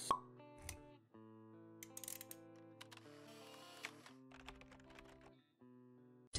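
Faint logo-intro jingle: soft held synth notes with a sharp pop just as it starts, followed by a few light clicks.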